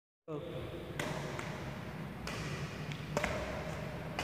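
Badminton racket strikes on a shuttlecock during a feeding rally: sharp, short hits roughly a second apart.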